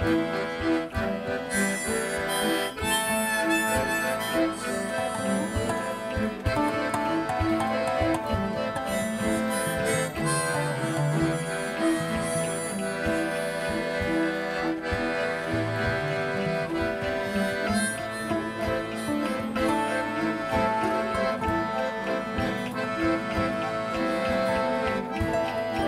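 Live acoustic folk instrumental: a harmonica leads with long held notes over strummed acoustic guitar and piano accordion.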